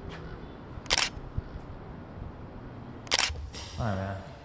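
Two sharp clicks, one about a second in and one about three seconds in, over quiet room tone.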